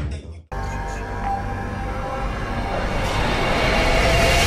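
Cinematic logo-intro sound design: after a sudden cut, a low rumbling drone swells steadily, with a rising hiss joining about three seconds in.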